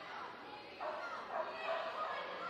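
A Yorkshire terrier yapping in short barks, starting a little under a second in, with voices in the hall behind.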